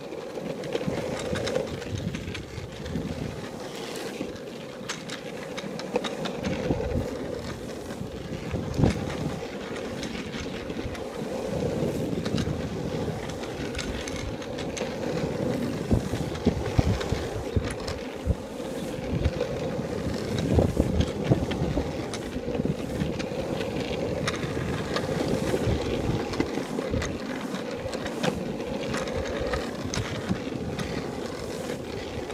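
Longboard wheels rolling on rough asphalt: a steady rumbling roar with scattered sharp clicks and knocks.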